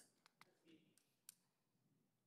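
Near silence with a few faint, sharp clicks in the first second and a half, then room tone.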